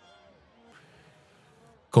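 Near silence with a few faint held tones, then a man's speaking voice starts at the very end.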